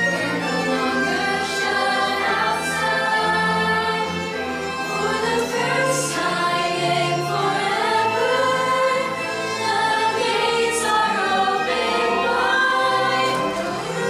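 A middle school cast singing together as a chorus over musical accompaniment, with held bass notes that change every second or two, in a musical-theatre ensemble number.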